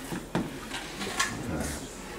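Notched steel trowel scooping tile mastic out of a plastic tub and scraping against it: a few short scrapes and clicks.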